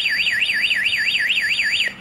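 Focus wireless home alarm panel sounding its siren: a loud, fast warbling electronic tone sweeping up and down about four times a second, then cutting off just before the end. It is alarming because the doorbell, set as a delay zone, was triggered while the system was armed.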